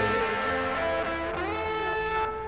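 Guitar-led band music playing a short instrumental passage with held, ringing notes and no singing.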